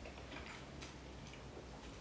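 A few faint, sharp little clicks as a sip of whisky is taken and tasted, over a low, steady room hum.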